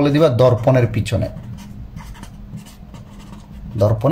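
Pen writing on paper in short scratching strokes, with a man talking over the first second and again just before the end.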